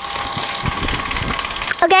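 Battery-powered bubble machine's fan motor running with a steady whir and a faint hum, while a cardboard toy box is handled and shifted, giving a few low knocks.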